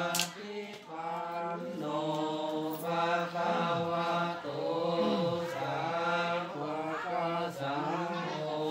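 A group of Thai Buddhist monks chanting Pali blessing verses in unison, a steady low drone of several voices holding long notes. Two sharp clicks come right at the start.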